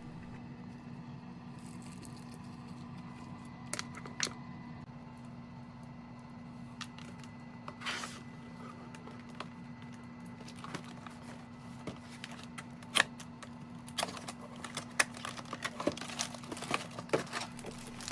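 Handling of a cardboard box and plastic-wrapped packaging: scattered rustles, taps and clicks, sparse at first and more frequent in the second half, over a steady low hum.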